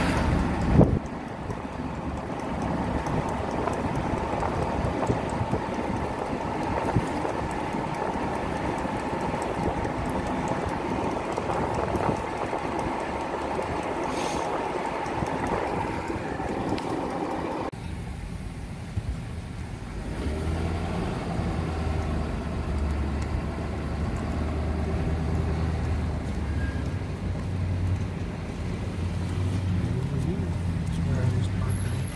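Car engine and road noise heard from inside the cabin while driving, with a sharp thump about a second in. Near the two-thirds mark the rushing noise drops away and a steady low engine hum comes forward.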